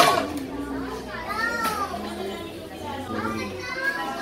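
Children's voices, high and excited, calling and chattering with other talk around them. There is a sharp knock at the very start.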